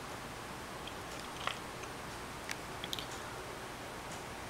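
Quiet steady hiss of a small room picked up by a handheld camera, with a few faint small clicks and rustles from hands holding the camera and device.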